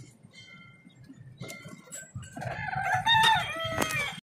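A rooster crowing once in the second half: one long call of about a second and a half, over faint background noise.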